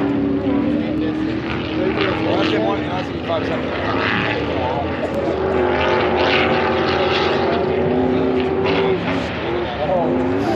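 Off-road race car engines running on the course at high revs, a steady drone that holds its pitch for a few seconds at a time and shifts slightly between held notes.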